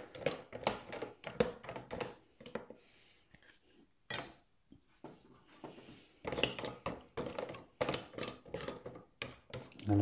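Small laptop trackpad circuit boards clicking and clattering against one another and a hard container as they are pushed down into an acetone bath. The clicks come irregularly, with a quieter stretch in the middle.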